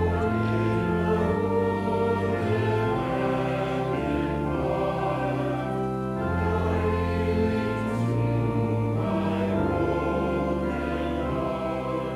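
Congregation singing a hymn verse with organ accompaniment; the organ's held bass notes change every second or so under the voices. The singing comes in at the start, just after a brief pause in the organ.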